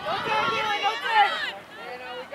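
Several voices shouting across a soccer field, overlapping and too far off to make out words, loudest in the first second and a half and then fainter.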